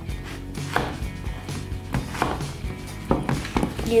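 Plastic spoons stirring slime in plastic tubs, with irregular knocks and scrapes of spoon against tub as the glue is worked together with sodium tetraborate activator.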